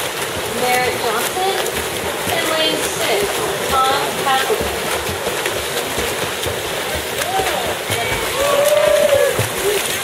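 Freestyle swimmers churning the water in a sprint race, a steady splashing wash, with people calling and shouting over it; a longer held shout near the end is the loudest moment.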